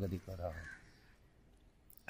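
A man's voice for about half a second at the start, with a faint bird call about half a second in; after that it is nearly quiet.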